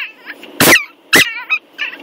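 Ten-week-old Yorkshire terrier puppy giving two short, sharp barks about half a second apart, with a wavering high whine just after the second.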